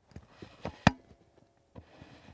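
A VHS-style video transition sound effect: a few sharp clicks over a faint hiss, the loudest a little under a second in.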